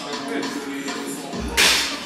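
Background music for a workout montage, with a sharp, loud noisy hit like a whip crack or swoosh about one and a half seconds in.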